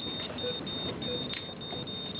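A Targa bedside patient monitor sounds its alarm: a high-pitched tone in long beeps with short gaps, signalling a zero heart rate in cardiac arrest. There is a single sharp click about a second and a half in.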